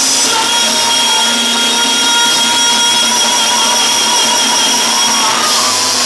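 A male singer belting one long sustained high note through a stage PA, with the music underneath; the note wavers near the end.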